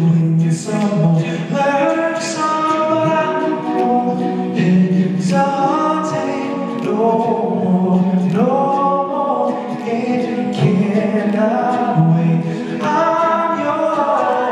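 Male a cappella group singing live in close harmony through microphones: a lead voice over sustained backing chords, no instruments.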